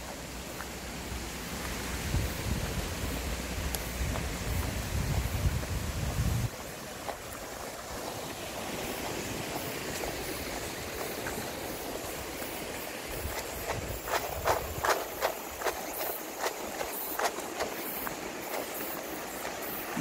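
Footsteps of a person walking on a concrete road with a handheld camera, a run of sharper steps about two-thirds of the way through. Wind rumbles on the microphone for the first six seconds or so.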